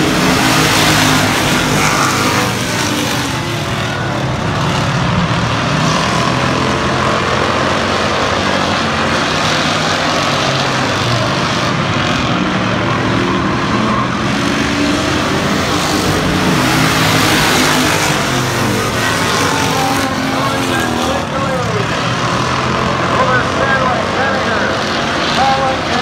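A pack of hobby stock race cars running laps on a short oval, their engines blending into one continuous drone that swells and eases as the cars come round.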